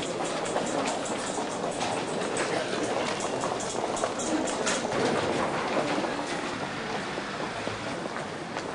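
Busy railway-station crowd: many shoes clicking on a hard floor within a steady din of people walking, the clicks thickest in the first half.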